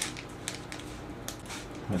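Hand-pumped spray bottle squirting water onto porridge oats, a few short sprays with clicks of the trigger, about half a second apart.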